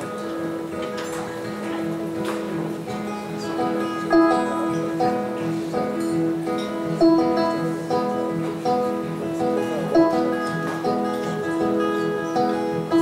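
Live band playing an instrumental song intro led by guitars: a short plucked riff repeated over a steady beat.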